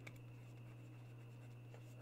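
Near silence with a steady low hum, under the faint scratching of a stylus writing on a tablet.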